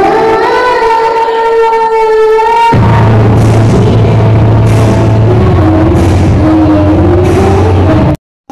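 A young girl singing into a microphone over a recorded backing track, holding a long rising note. About three seconds in the note ends, and the backing track's bass and drum beat carry on with a lighter vocal line over them.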